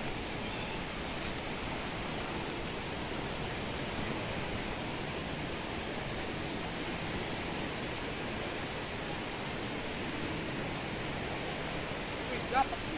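Steady rush of a river in flood, an even noise that holds at the same level throughout.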